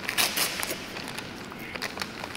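Spaghetti being slurped and eaten with chopsticks while a paper food wrapper crinkles. A few short, sharp sounds come in the first half second, then softer scattered rustles.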